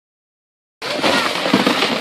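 Sled shovel being pushed across crusty snow and ice, a loud crackling scrape that starts abruptly just under a second in.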